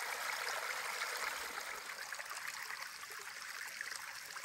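Rainwater from the previous night running and trickling over the rocks of a flooded hiking trail, a steady even rush that eases slightly toward the end.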